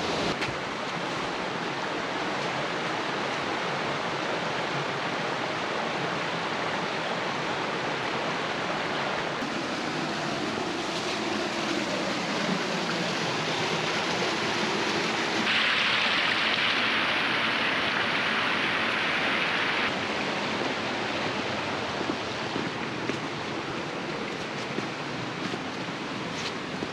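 Mountain river water rushing over a small rock cascade into a pool, a steady noise that grows louder for a few seconds past the middle.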